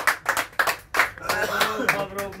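A small group of people clapping hands together in time, about three claps a second, with a few voices joining near the end.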